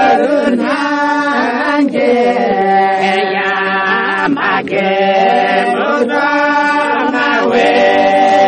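Music: a song with several voices singing together in phrases over a steady held low note.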